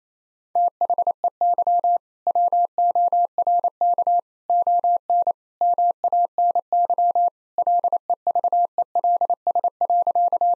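Morse code sent at 28 words per minute as a single pure tone of about 700 Hz, keyed in short dits and longer dahs with gaps between words, starting about half a second in. It spells the punchline "They work on many levels."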